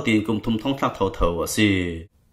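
Speech only: a voice narrating without pause, in a language the recogniser could not transcribe.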